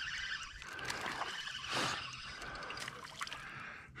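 Water splashing and trickling as a small hooked bass is reeled in and thrashes at the surface, with a few brief splashes, the clearest just under two seconds in.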